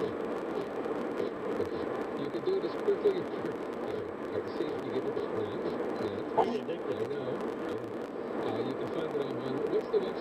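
Irregular little popping clicks of virtual bubble wrap played through a car radio, heard inside a moving car over a steady road hum.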